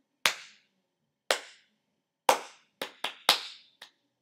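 Hand claps in a rhythm pattern: three claps about a second apart, then four quicker ones near the end. It is a rhythm clapped for a student to echo back.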